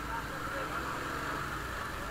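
Motorcycle engine running steadily at low road speed, a low even hum heard from the riding bike itself.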